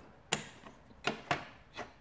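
Four short, sharp plastic clicks, the loudest about a third of a second in, as the snap-fit retaining clips holding an oven's electronic control board in its plastic frame are worked loose.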